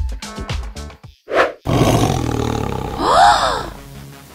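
Dance music with a steady beat stops about a second in. After a brief whoosh, a loud animal-roar sound effect follows, with a cry that rises and falls in pitch near the end.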